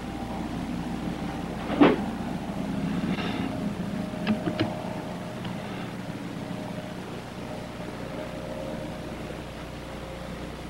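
A steady low mechanical hum, with a single knock about two seconds in and two or three light clicks a little after four seconds as a metal engine part is handled.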